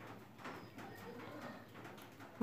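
Faint, irregular crackling of oil around a masala-coated whole tilapia frying in a non-stick pan.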